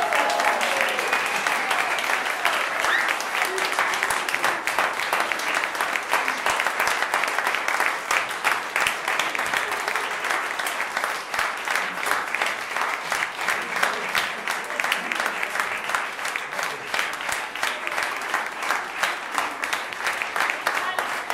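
Audience applauding steadily right after a piece ends, with a few voices calling out in the first seconds.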